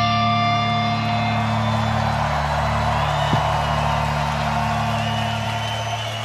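A live metal band's distorted electric guitars and bass hold one low chord that rings on steadily while its upper overtones die away. Underneath, a large festival crowd cheers, whistles and whoops, growing louder.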